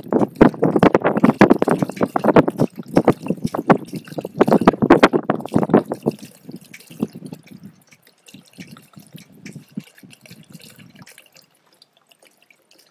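Water glugging out of the neck of a large plastic water jug into a funnel at a boat's deck water-tank fill. It is loud and continuous for about the first six seconds, then thins to a faint trickle and drips as the jug runs empty.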